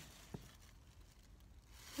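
Near silence: room tone with a faint low hum and one faint click about a third of a second in.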